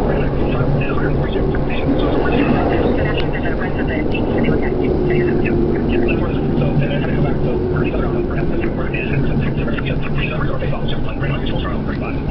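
Train running and pulling into a station, heard from inside the carriage: a steady low rumble of wheels and motors, with indistinct voices over it.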